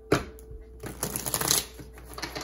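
A deck of tarot cards shuffled by hand: a sharp snap of the cards just after the start, then about a second of quick rustling shuffles.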